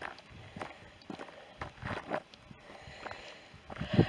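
Footsteps of a walker on a stony, gravelly track, crunching at a steady pace of about two steps a second.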